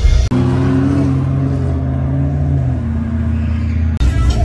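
S197 Mustang's 5.0 V8 engine held at steady revs at the drag strip starting line, its note stepping slightly lower about three seconds in.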